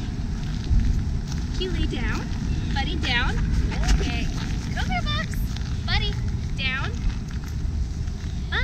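Wind rumbling on the microphone, with short high gliding calls about once a second over it.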